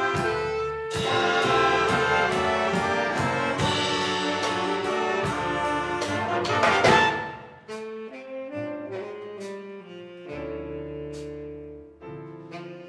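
A jazz big band of saxophones, trumpets and trombones over piano, bass and drums plays a slow ballad arrangement. The full ensemble builds to a loud peak about seven seconds in, then drops to a soft passage of held notes over a light, steady cymbal beat.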